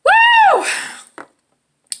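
A woman's excited high-pitched whoop, "Woo!", one cry that rises and falls in pitch over about half a second and trails off into breath, with a short click just after a second in.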